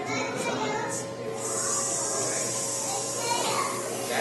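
A hissing cockroach hissing once, a long airy hiss of about two seconds that starts about a second and a half in, over children's chatter. It is the hiss the insect makes by forcing air out through its breathing holes when handled.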